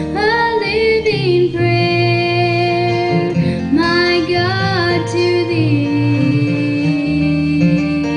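Live acoustic bluegrass: acoustic guitar and upright bass under a sung melody whose notes bend and waver, settling into one long held note a little after the middle.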